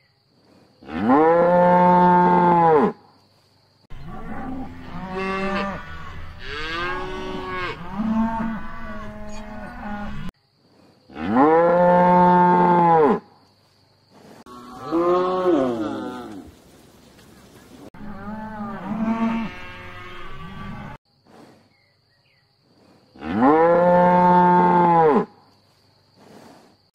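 Cattle mooing: three loud, drawn-out moos of about two seconds each, near the start, in the middle and near the end, with quieter overlapping moos between them.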